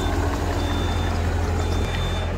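Compact track loader's diesel engine running steadily while its backup alarm sounds high beeps of about half a second, roughly once a second, as the machine reverses carrying a crate on its forks.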